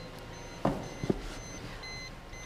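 Car's electronic warning chime beeping steadily about twice a second, a short high tone each time. Two light knocks of handling about half a second apart near the middle.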